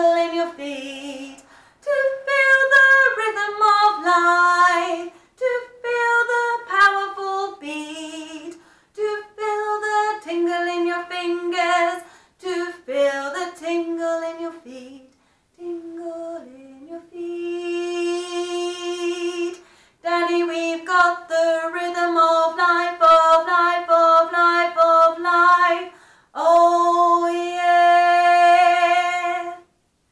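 A woman singing the low (alto) choir part of a jazzy show tune solo and unaccompanied, in short rhythmic phrases. Two long held notes come about two thirds of the way through and near the end.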